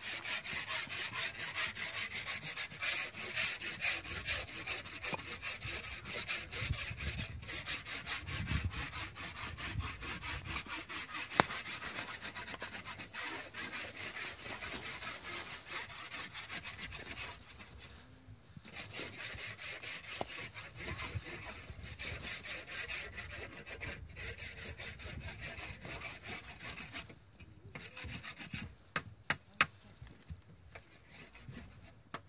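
Fast, steady rubbing and scraping of a canvas and leather strap being worked by hand, with two short pauses, a single sharp click partway through and a few small clicks near the end.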